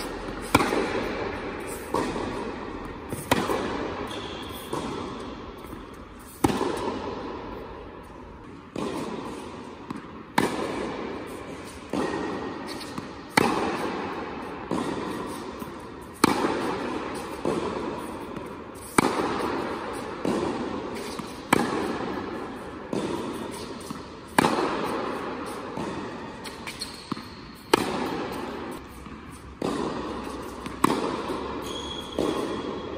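A tennis ball being struck with a racquet and bouncing on an indoor hard court during a groundstroke drill: sharp pops every one to three seconds, each followed by a long echo in the hall.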